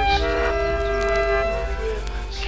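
A train horn sounds one held chord of several steady tones for about a second and a half, laid into a music track over its low pulsing bass.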